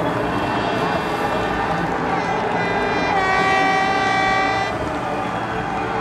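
Crowd noise with air horns blowing. One long horn chord of several notes holds for about a second and a half past the middle.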